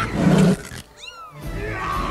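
Animated film soundtrack: a roar from the snow leopard villain over the film's music. About a second in, the sound drops away briefly, with a few quick falling whistles.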